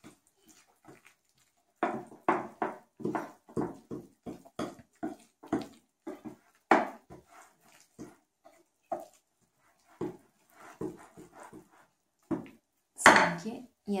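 Wire hand whisk stirring thick, flour-heavy cake batter in a glass bowl, in quick rhythmic strokes about three a second that thin out after a few seconds; the batter is heavy going for the whisk.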